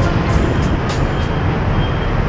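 City street traffic, buses and motor scooters going by, with background music playing over it.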